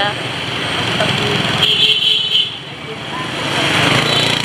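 Motorbike and scooter traffic passing close by on a busy street, small engines running. A brief high-pitched tone sounds about two seconds in, and another bike's engine grows louder near the end.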